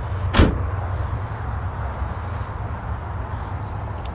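A pickup tailgate slammed shut once, a single sharp metal bang about half a second in, over a steady low rumble.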